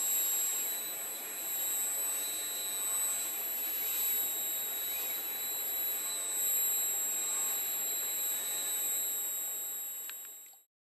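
FANUC industrial robot arm running its program: a steady high-pitched whine over a constant hiss, with no clear changes as the arm moves the marker.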